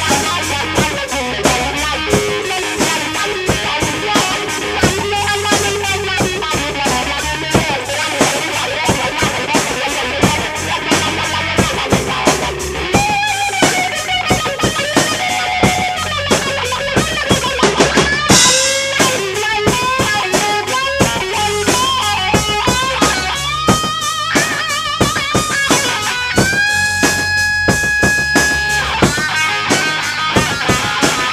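Instrumental rock jam: electric guitar played through a custom-modded wah pedal, with bending, gliding lead lines over a drum kit played by a beginner drummer. There is a bright crash about halfway through, and a long held guitar note near the end.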